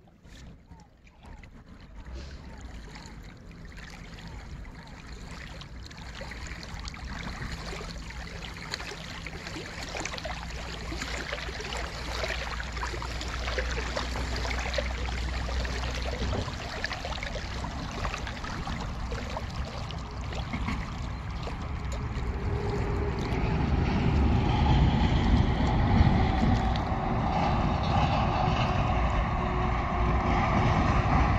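Heavy trucks crossing a long concrete road bridge, a steady rumble of engines and tyres that grows louder as they come nearer.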